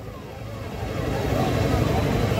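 A motor vehicle's engine running close by, growing steadily louder, with faint voices underneath.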